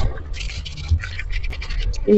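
Dishes being scrubbed with a sponge in a steel kitchen sink: a quick, irregular run of short scratchy strokes.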